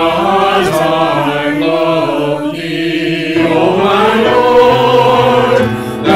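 Mixed choir of men's and women's voices singing a hymn together, multitrack home recordings mixed as a virtual choir, with piano accompaniment. The low voices drop away for about a second in the middle, then the full choir comes back.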